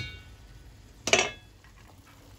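A single sharp clink against a stainless steel pan about a second in, with a short metallic ring after it.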